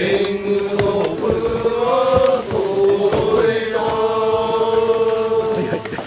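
Ritual chanting at a Shinto rice-planting festival: a voice sings long, drawn-out notes that waver slightly in pitch, in phrases of one to two and a half seconds.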